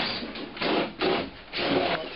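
A hand drywall saw cutting through drywall in about four back-and-forth strokes, opening a hole in the wall for an electrical switch box.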